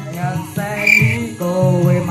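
A young man singing off-key through a karaoke microphone and speaker over a dangdut koplo backing track, in short sung phrases.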